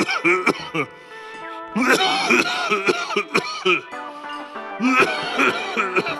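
A voiced cartoon character's raspy, coughing laughter in several bursts with short pauses, over background music.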